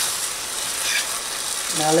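Spaghetti in Alfredo sauce sizzling in a skillet while being stirred, with a utensil clicking and scraping against the pan.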